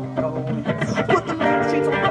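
Acoustic-electric guitar being strummed, playing the chords of a rock song.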